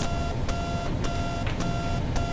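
Steady electrical hum with a faint high tone, broken by faint clicks every few tenths of a second: background noise on the recording.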